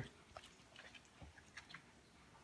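Near silence with a few faint, short mouth clicks: a boxer dog eating a piece of dried shredded squid, gulping it down with little or no chewing.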